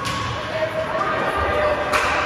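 Ice hockey game sound in an arena: two sharp knocks of stick and puck, one at the start and one near the end, over the voices of players and spectators echoing in the rink.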